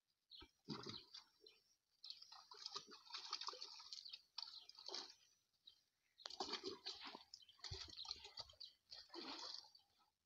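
Faint, irregular wet squelching and splashing of mud and water as mud is scooped by hand and a brick mould is worked in a bucket during hand-moulding of mud bricks.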